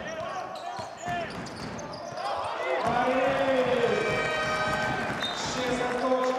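Basketball game sounds in an arena: the ball bouncing and sneakers squeaking on the hardwood court. From about three seconds in, the crowd cheers and shouts louder after a home basket.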